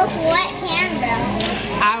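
Children talking, their voices filling the pause in the adult speech.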